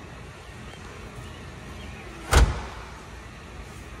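A single heavy thump of a 2005 Spyker C8's scissor door shutting, about two and a half seconds in, over a faint steady room hum.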